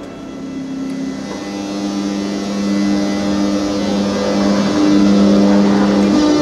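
A locomotive-hauled passenger train passing close by, growing steadily louder as the locomotive comes up. Its rolling noise carries a steady two-tone low hum from the locomotive.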